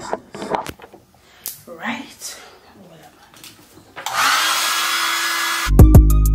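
Small handheld hair dryer switched on about four seconds in. It blows with a steady rushing noise over a motor hum that rises briefly as it spins up and then holds steady.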